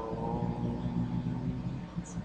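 A man's voice holding one long, steady hesitation sound for about a second and a half, over a steady low background hum.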